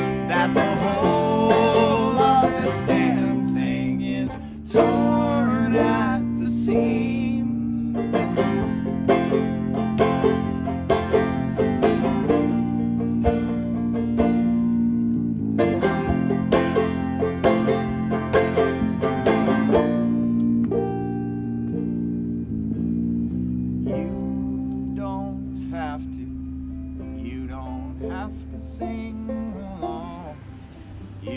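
Live acoustic band music led by rapidly picked banjo over held low notes, with a man's voice singing in places, mostly in the first few seconds. The music thins out and gets a little quieter over the last ten seconds.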